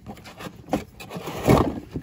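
A cardboard box of glass bowls being opened by hand: a few light taps and knocks, then a louder scraping rustle of the cardboard about one and a half seconds in.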